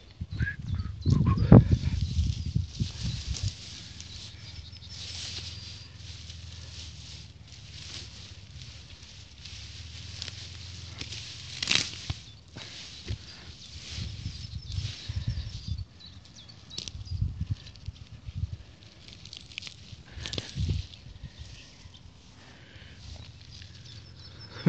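Grass and leafy weeds rustling as a hand brushes through and parts them, with rumbling wind and handling noise on a phone microphone. The rumble is loudest in the first few seconds.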